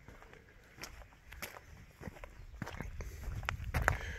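Footsteps of a person walking, a scattering of scuffs and sharp knocks that grow louder toward the end, over a low rumble.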